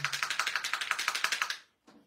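Bottle of acrylic paint shaken hard, giving a fast, even rattle of about a dozen knocks a second that stops about a second and a half in. The bottle is thought to be almost empty.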